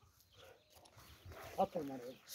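Quiet open-air ambience with faint scattered sounds, then near the end a short, faint voice.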